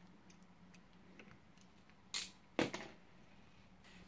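Faint clicks and scrapes of small plastic RC shock parts being handled and trimmed with a hobby knife, with two short, loud hissing rushes about half a second apart near the middle.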